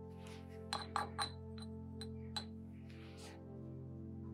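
A quick run of about six light glassy clinks in the first half, like a paintbrush tapped against a glass water jar while rinsing, over soft steady background music.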